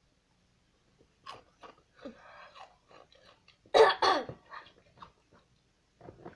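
A boy coughing and clearing his throat in a string of short coughs, the two loudest about four seconds in.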